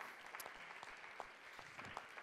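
Faint applause from a theatre audience, the separate claps heard as light ticks.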